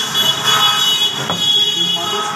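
A steady, high-pitched whistling tone that fades out near the end. A single meat-cleaver strike on the wooden chopping block comes about a second and a half in.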